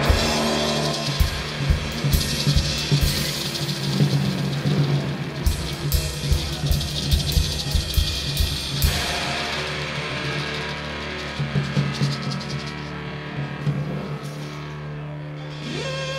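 A rock band playing live, the drum kit beating hard for about the first nine seconds over a steady low bass note. After that the drumming thins to scattered hits while held guitar tones carry on.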